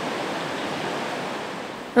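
Steady rushing of a shallow creek, with a small cascade spilling into it from the bank, easing slightly toward the end.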